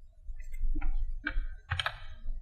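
Typing on a computer keyboard: four or five separate keystroke clicks, the last ones the loudest.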